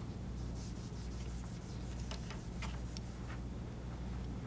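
Hands working on a wooden cabinet top, with scattered small clicks and rubbing as the strap hardware and drill are handled and set down, over a steady low hum.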